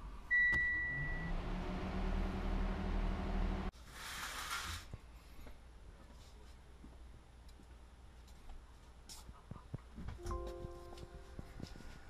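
A short electronic beep near the start, then a low hum that rises in pitch and stops abruptly after about three and a half seconds, followed by a brief hiss. Near the end a short chime of several steady tones sounds as the laptop's ECU reflash completes.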